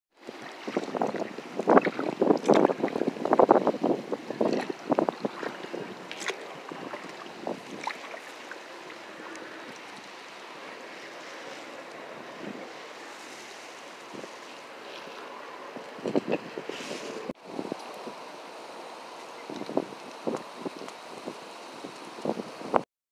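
Wind noise on the microphone and water lapping against a kayak's hull, steady throughout. It is busy with loud irregular knocks and rustles for the first five seconds, with a few more late on.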